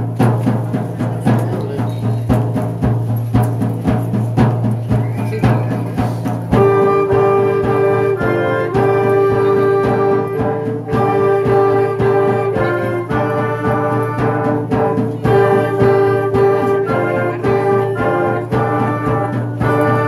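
Youth concert band playing a piece meant to evoke the Apache: a steady percussion beat over a low held note, then the wind and brass section enters with a melody about six and a half seconds in.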